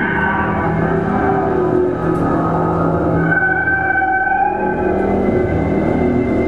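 Concertina drones held as long steady chords, with high tones slowly bending and gliding above them and a dense rumbling noise underneath, in an experimental improvised piece.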